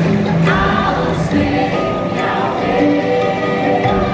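A water ride's soundtrack playing: music with a wordless choir singing held notes, with a few short rising swoops layered in.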